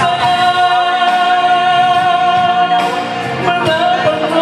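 A man singing a solo into a handheld microphone, holding one long note for nearly three seconds before the melody moves on.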